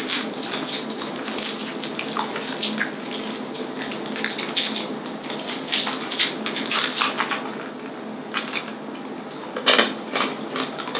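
Plastic candy wrappers crinkling and rustling as they are unwrapped and handled: a dense run of crackles that thins out about seven seconds in.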